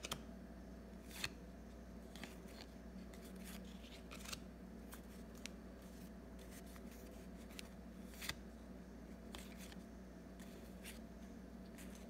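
Baseball trading cards being handled: a stack of card stock flipped through and squared by hand, giving faint, sparse clicks and slides, roughly one every second, over a low steady hum.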